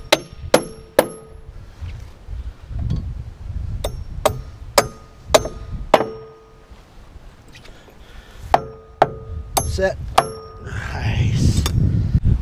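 Hammer driving toenails at an angle through a wooden framing board to pull its low end up into line: three runs of three or four ringing strikes about half a second apart, followed near the end by a rustle.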